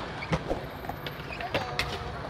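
Skateboard wheels rolling on concrete, with a few sharp clacks from the board, under faint voices.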